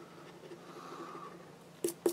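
Faint scratching of a coin rubbing the scratch-off coating from a paper lottery ticket, with two short sharp noises near the end.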